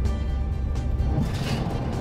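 Background music, over a low rumble that drops away about a second in.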